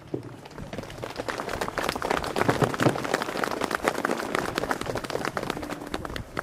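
A small crowd applauding: a dense patter of hand claps that builds up over the first couple of seconds and then holds steady.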